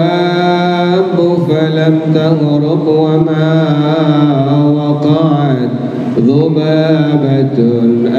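A man chanting an Arabic devotional melody through a microphone, holding long, drawn-out notes with slow melismatic turns and a brief dip in pitch about three-quarters of the way through.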